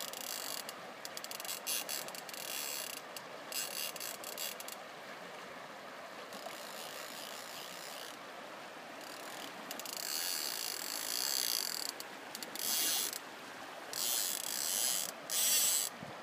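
Fly reel's click-and-pawl drag ratcheting in several short bursts of rapid clicks, as fly line is wound in or pulled off the reel. Under it is the steady rush of a river.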